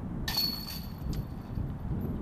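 A short putt hitting the metal chains of a disc golf basket: a sudden metallic jingle about a quarter second in that rings and fades within about a second, over a low steady rumble.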